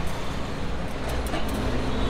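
Steady street traffic noise with a low rumble, and voices in the background.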